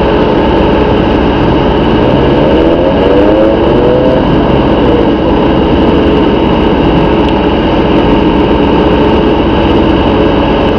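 Steady, loud hum inside a car cabin: the car's engine idling with the air-conditioning blower running. A short rising pitched sound comes through about two seconds in.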